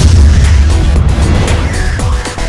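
Loud electronic music intro sting starting abruptly out of silence: a deep bass rumble under a noisy sweep, with a sound falling in pitch near the end.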